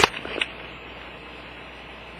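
Handling clicks: a sharp click right at the start and a smaller one about half a second later, then a steady faint hiss.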